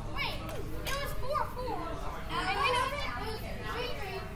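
Children's voices calling out and chattering during play, with no clear words, over a steady low background rumble.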